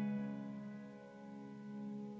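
Background piano music: a single held chord slowly dying away, with no new note struck.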